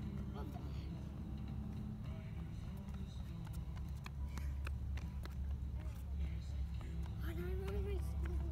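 Skateboard wheels rolling on concrete: a steady low rumble with scattered light clicks.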